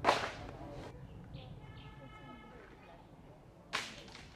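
Bamboo stalks with their leaves crashing down into the panda enclosure: a sharp swishing crash at the start that dies away over about a second, and a smaller one near the end.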